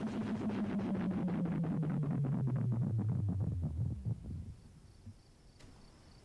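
A low electronic drone with a fast throbbing pulse, sliding downward in pitch and fading away after about four seconds. Near the end, faint crickets chirping.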